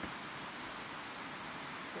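Steady, even hiss of outdoor background noise, with no distinct sounds standing out.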